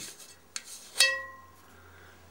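A faint tick, then about a second in a single sharp metallic clink that rings briefly, from metal parts of a British Anzani outboard's flywheel magneto being handled around the contact-breaker points.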